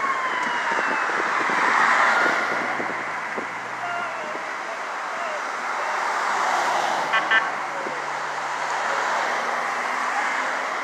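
Traffic passing on a busy highway, with an emergency vehicle's siren winding down in pitch over the first second. Two short horn beeps sound about seven seconds in.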